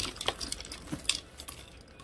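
Silver metal hardware on a leather hobo bag (rings, clips and zipper pulls) clinking and jangling as the bag is handled, with a few separate clinks in the first second or so.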